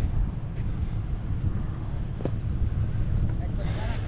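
Wind buffeting the camera microphone: a steady, gusty low rumble.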